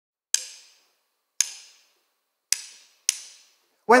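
Drumsticks clicked together four times as a count-in, each a sharp click with a short ring, the last two closer together. The band and a male singer come in right at the end.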